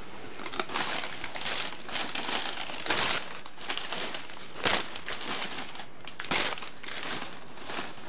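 Crumpled newspaper packing rustling and crinkling as hands dig through it in a cardboard box, in irregular handfuls with several louder crackles.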